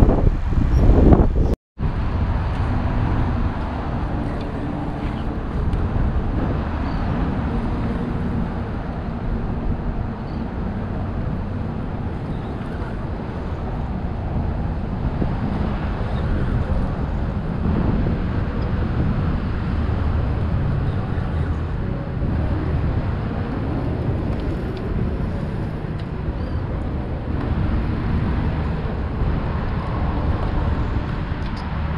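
Steady, muffled rumble of wind and water on an action camera's microphone aboard a fishing kayak, cut off by a brief dropout about a second and a half in, then running on evenly.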